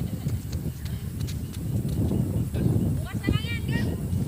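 Wind buffeting the microphone: a gusting low rumble, with scattered light clicks and a brief high-pitched call about three seconds in.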